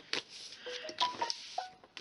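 Mobile phone message alert tones: a few short beeping notes at differing pitches, one after another. Soft taps and rustles of hands on cardstock are mixed in.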